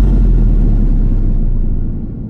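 Deep, loud low rumble from an edited-in trailer-style boom sound effect: the long tail of the hit, holding steady and beginning to fade near the end.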